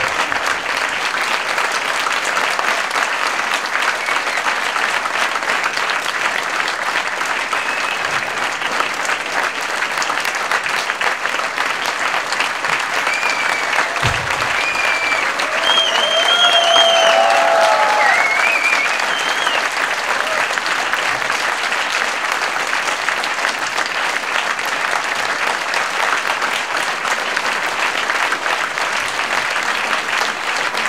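Audience applauding steadily, with a few voices calling out about halfway through.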